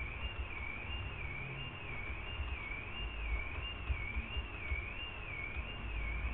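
Quiet room tone with a faint high-pitched whine that wavers up and down in pitch about one and a half times a second, over a low rumble.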